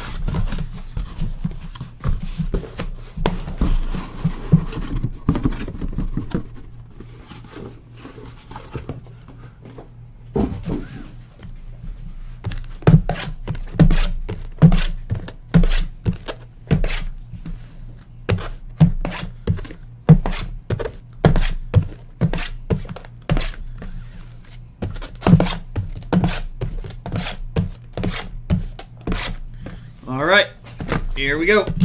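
Cardboard boxes being handled: the flaps of a cardboard card case are worked open with some rustling, then sealed hobby boxes of trading cards are lifted out and set down in a stack. From about a third of the way in there is a quick, irregular run of cardboard knocks and thuds.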